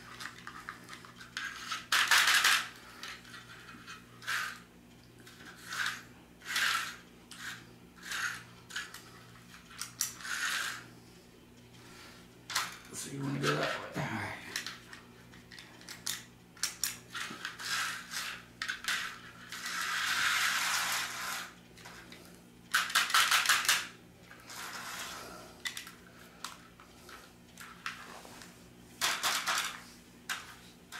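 HO-scale slot cars running on a plastic slot-car track: irregular bursts of whirring and rattling as the small electric cars speed round and pass close by, some short and some lasting a second or more, over a steady low hum.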